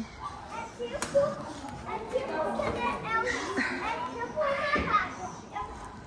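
Children's voices and chatter in a busy play area, scattered and some way off, with a short knock about a second in.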